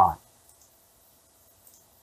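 Two faint computer mouse clicks about a second apart, clicking the mute buttons on audio tracks, in near silence.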